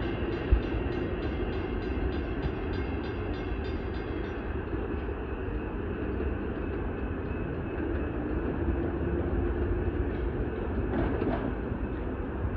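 Long Island Rail Road M7 electric multiple-unit train pulling away, its running noise a steady rumble as it recedes. A rapid high ticking, about three ticks a second, stops about four seconds in.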